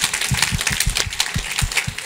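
Applause: many people clapping. Heavy low thumps from a handheld microphone being handled come through over it as the microphone is passed from one person to another.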